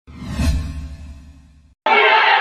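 Whoosh sound effect of an opening graphic with a deep rumble underneath, swelling over the first half second and then fading away. Near the end, a crowd's shouting cuts in suddenly.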